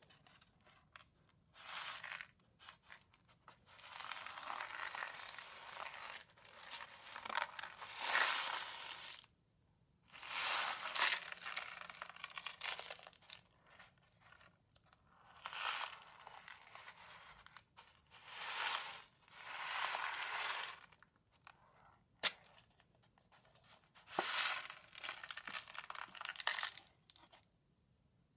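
Homemade paper-plate ocean drum tilted back and forth, its loose filling rolling across the inside in about seven rushing swishes, each a second or two long, with quieter gaps between them. Two sharp clicks come near the end.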